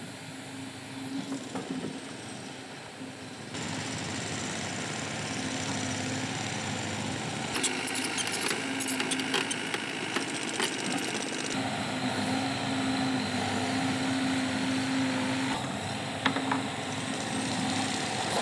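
Hydraulic excavator engine running steadily at a construction site, with a run of sharp metallic clanks and knocks in the middle as the machine works.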